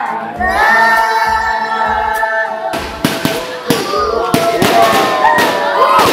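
A group singing with a music track holds a long final note, then about three seconds in it cuts off suddenly and aerial fireworks take over, cracking and popping in rapid, irregular bursts, with people's voices among them.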